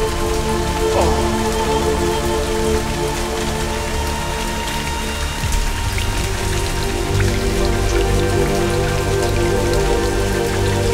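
Steady heavy rain falling, under a slow music score of long held notes.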